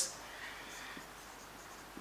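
Faint sound of a marker pen writing on a whiteboard.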